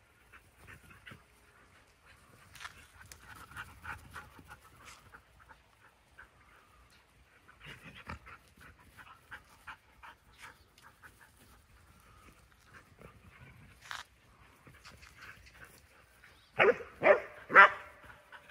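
Dogs playing, faintly panting and moving through most of it, then near the end one dog barks several times in quick succession, much louder than the rest.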